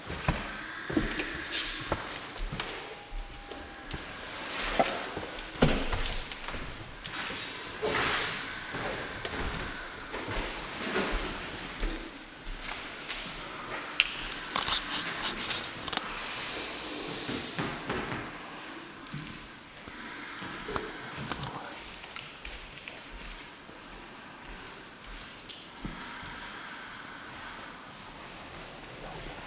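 Footsteps, rustling and scattered knocks of several people moving about on a wooden floor.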